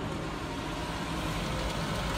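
Laser-cutter fume extraction blower running: a steady rush of air with a faint hum, growing slightly louder.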